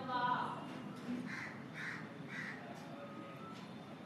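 A crow cawing three times in quick succession, a little over a second in.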